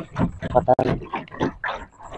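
A man's voice in short, broken, wordless sounds, mixed with a few small knocks.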